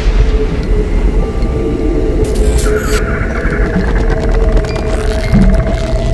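Dark intro soundtrack: a loud, deep rumbling drone with faint held tones above it and a brief crackly hiss between about two and three seconds in.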